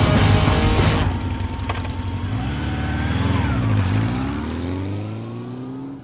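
Motorcycle engines running as a group of bikes rides off. About three and a half seconds in, an engine revs up with a steadily rising pitch, and the sound fades toward the end.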